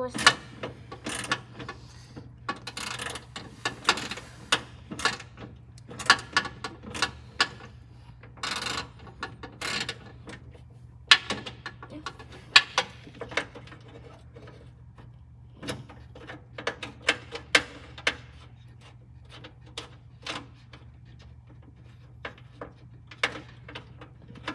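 Hand tools clicking and clinking against metal as a radiator mounting bolt is worked loose, in irregular runs of sharp clicks over a steady low hum.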